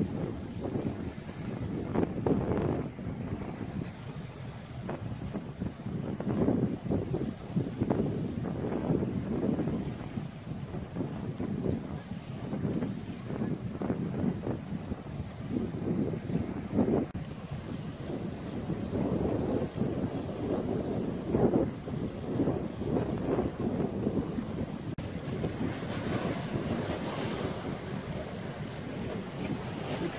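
Wind buffeting the microphone in uneven gusts, over small lake waves washing against a rock breakwater.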